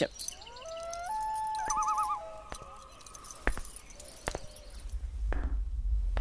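A few whistled bird calls: short rising notes, then held notes and a quick warble. Then come several sharp clicks, and near the end a low rumble swells.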